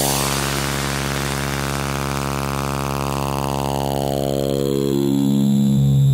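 Electronic dance-music trailer soundtrack ending on a long held synthesizer chord, with no beat, while a bright sweep slowly falls in pitch over it; it swells slightly louder near the end.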